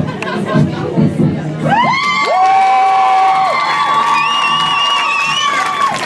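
Young audience cheering, breaking about two seconds in into several long, high-pitched screams held steadily to the end.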